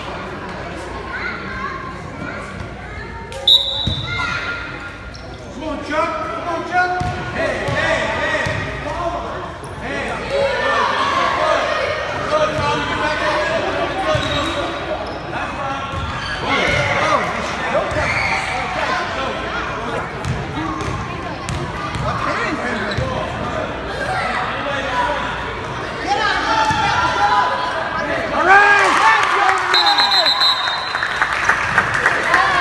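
Youth basketball game in an echoing gym: a basketball bouncing on the hardwood floor under steady spectator chatter and shouting, which grows louder near the end. A referee's whistle gives a short blast about three and a half seconds in and again at the very end.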